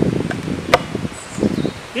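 Wooden beehive cover being handled: a sharp click near the start and another under a second later, with a few soft knocks of wood, over honeybees buzzing.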